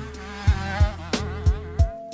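Backing music with a steady beat of about three thumps a second, over the high, buzzing whine of a small youth motocross bike engine revving up and down.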